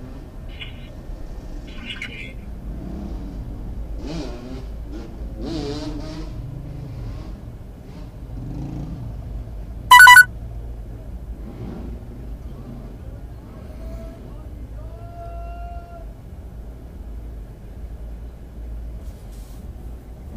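Low, steady rumble of a car idling in slow city traffic, heard from inside the cabin, with faint voices in the background. About halfway through, a single short, very loud pitched beep stands out above everything else.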